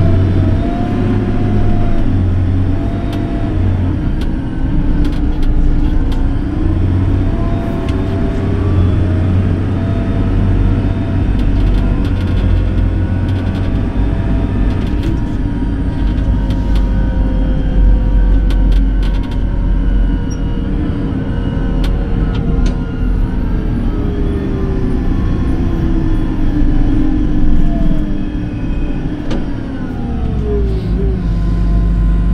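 JCB Fastrac tractor's diesel engine and drivetrain heard from inside the cab while driving: a steady low rumble with a whine that rises and falls in pitch as the tractor speeds up and slows.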